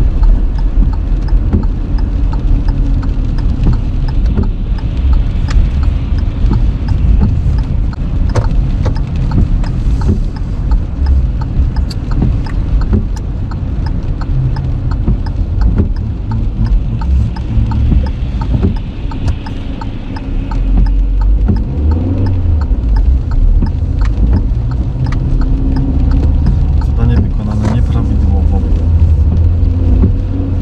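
Car interior noise while driving on a wet road in rain: a steady low rumble of tyres and engine, with scattered ticks of raindrops and wiper strokes on the windshield.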